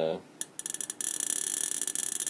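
Small-electrode spark gap of a home-built air-cored step-up coil rig firing as a rapid, dense crackle. It sputters with a few scattered snaps, then from about a second in fires steadily and densely, the sound of the gap running hard enough to light a 50 W bulb brightly.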